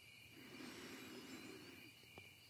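Near silence: faint room tone, with a faint low hum through the middle of the pause.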